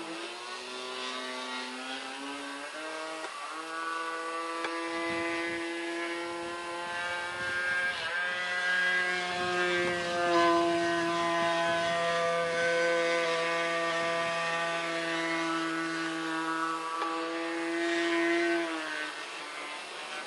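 15 cc O.S. engine of a 2 m radio-controlled biplane running in flight. Its pitch dips at the start, climbs again about three seconds in, then holds a fairly steady tone with small wavers before falling away near the end.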